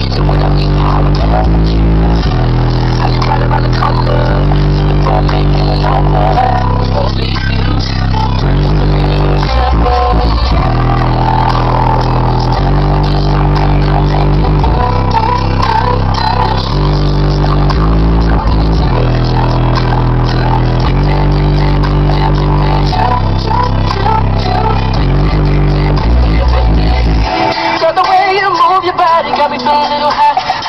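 Bass-heavy rap song playing loud on a car stereo, its deep bass notes from 12-inch Kicker CVR subwoofers filling the cabin. The bass line changes every second or two and briefly drops out about ten seconds in.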